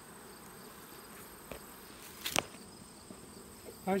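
Steady buzz of honey bees swarming over a comb frame pulled from an open hive, with a single sharp click a little over two seconds in.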